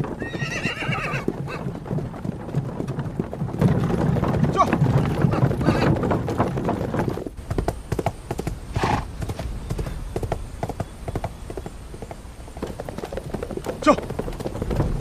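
Horses' hooves clip-clopping at a quick pace, with a horse whinnying in the first second or so. The hoofbeats grow louder for a few seconds in the middle.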